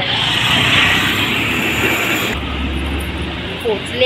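Road traffic noise close by, a loud steady rush that about two seconds in gives way suddenly to a lower rumble.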